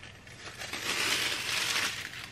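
A sheet of gold transfer foil being peeled off a page of foil-printed paper labels, a crinkling rustle that builds about half a second in.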